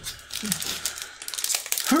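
Foil wrapper of a Magic: The Gathering collector booster pack crinkling as it is handled and torn open, a rapid run of small crackles that is busiest in the second half.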